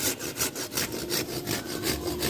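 Hand pruning saw cutting through a branch of a serut (Streblus asper) bonsai, in quick, even back-and-forth strokes.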